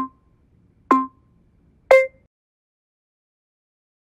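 Electronic countdown beeps from a workout interval timer, three short beeps one second apart, the last one higher-pitched, signalling the end of the work interval.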